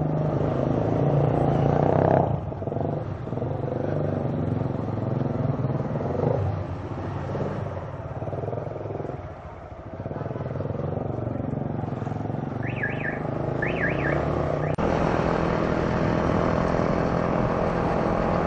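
Motorcycle engine running while riding, over road and wind noise, its note changing with the throttle through town. It eases off briefly about halfway, then settles into a steadier run near the end.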